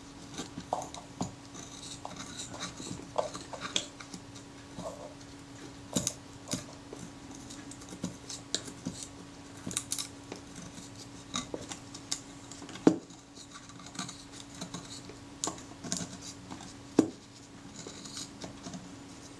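A scalpel blade working under leatherette on a Rolleiflex Automat camera's metal body to lift the covering: a run of small irregular scratches and light metallic ticks, with two sharper clicks a little past the middle and near the end.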